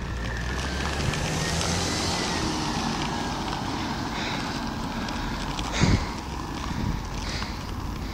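Steady rush of wind and road noise from riding a bicycle on asphalt, with a car driving past; a single sharp knock about six seconds in.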